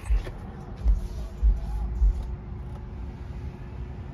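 Handling noise on a handheld phone's microphone: a few low bumps and rumbles in the first two seconds as the phone is moved into the car, over a steady low hum.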